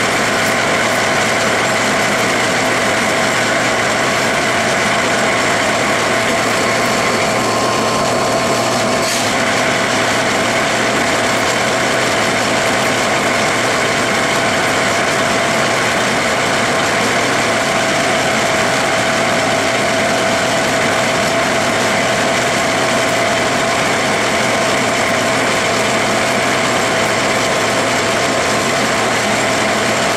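Metal lathe running at about 225 rpm under power feed while a pinch-type knurler rolls a straight knurl into a spinning aluminum bar: a loud, steady machine whine with a few held tones. About eight seconds in there is a brief rougher, scratchy patch that ends in a click.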